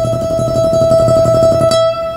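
Acoustic guitar with a single high note tremolo-picked, with fast, even alternate pick strokes ('trembling the note'). The picking stops just before the end and the note rings on briefly.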